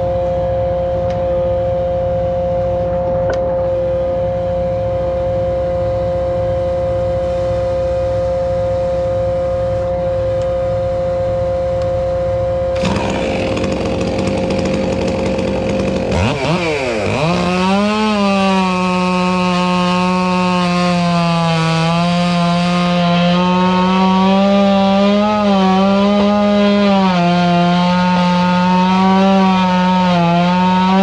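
A gas chainsaw revs up sharply a little past halfway, then runs at full throttle while cutting into a tree trunk at its base, its pitch dipping slightly as the chain bogs in the wood. Before that, a steady machine drone holds one pitch.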